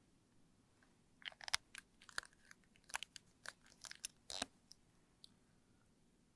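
Handling noise: a dozen or so short, irregular clicks and crackles between about one and four and a half seconds in, then near quiet.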